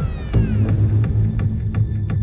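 Electronic hard trance track playing back: a short pitched sweep falls steeply at the start, then a heavy sustained bass comes in under a steady beat.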